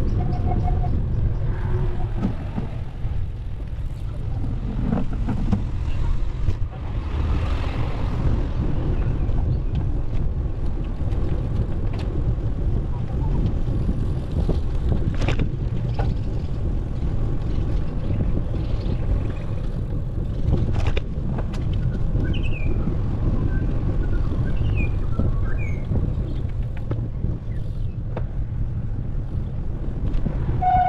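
Steady wind rumble and tyre noise on a bicycle-mounted camera's microphone while riding. A couple of sharp clicks come about halfway through, and a few short high chirps near the end.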